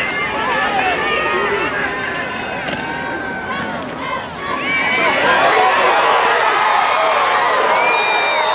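Football crowd in the stands, many voices talking and shouting over one another, swelling louder about five seconds in as the spectators react to a play on the field.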